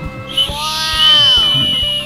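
Small plastic toy slide whistle being blown, starting about half a second in: one whistled tone held to the end, its pitch bending partway through.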